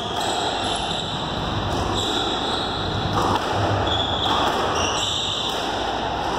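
Squash rally heard through the glass court wall: faint squash-ball strikes and players' footsteps over steady room noise.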